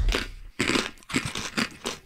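People crunching and chewing mouthfuls of dry dog-food kibble, in irregular crisp crunches.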